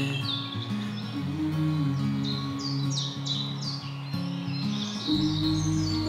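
Background music of held, slowly changing low notes, with birds singing over it; a bird gives a quick run of falling chirps about halfway through.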